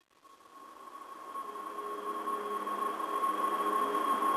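Intro of a music track: a hiss with a steady high tone and faint lower tones, slowly growing louder.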